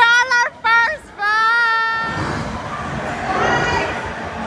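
High-pitched voices letting out several long, drawn-out cries that bend in pitch over the first two seconds, followed by a rougher, steadier rush of ride and crowd noise.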